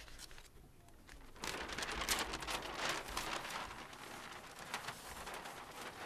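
Paper rustling and crinkling as a large flip-chart sheet with photos is handled at the easel. It starts about one and a half seconds in, is loudest for about two seconds, then goes on more softly.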